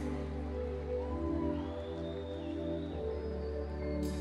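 Soft, sustained chords held over a low bass note, the quiet instrumental opening of a live pop-country ballad before the guitar and vocals come in.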